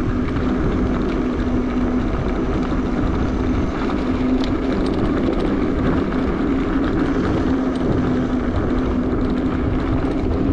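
Bafang BBSHD mid-drive e-bike motor humming at a steady pitch under throttle while riding, over the rumble of tyres on a dirt road and wind on the microphone.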